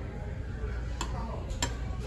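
A metal skimmer clinking against a stainless steel fondue pot, two or three light clicks about a second in and near the end, over a low restaurant background hum.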